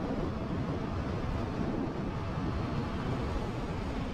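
Wind rushing over the microphone with the steady drone of a Kymco KRV scooter and its tyres, riding at highway speed of about 100 km/h.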